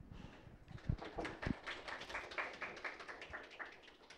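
Light applause from a small audience, many quick irregular claps thinning out and fading near the end, with a couple of low thumps about a second in.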